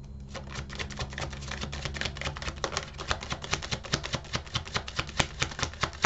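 Tarot deck being shuffled by hand: a fast run of crisp card clicks that grows louder toward the end.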